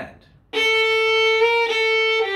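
Violin bowed in a slurred passage: a held note starts about half a second in and carries on, with a slight change of pitch partway through as the slur moves between notes.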